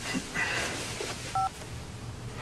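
A mobile phone's keypad tone: one short two-note beep about one and a half seconds in, as the phone is worked to read a text message.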